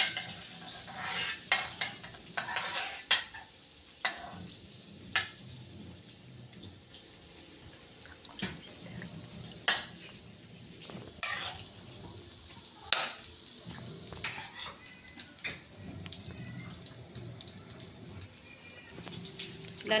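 Butter sizzling as it melts in a wok, a steady high hiss, with a spatula scraping and tapping against the pan in sharp clicks every second or so.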